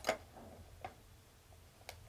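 Faint computer mouse clicks: a quick cluster at the start, then single clicks a little under a second in and near the end.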